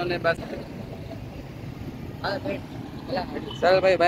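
Steady noise of passing road traffic, with short snatches of a man's voice about two seconds in and near the end.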